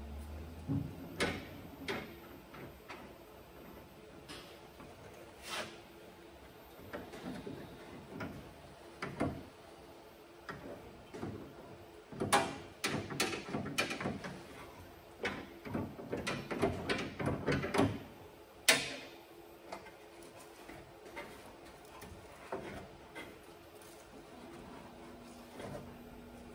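Hands working inside a steel ute tailgate's latch mechanism: scattered clicks and knocks of metal parts, coming thick for several seconds past the middle, with one sharp knock soon after.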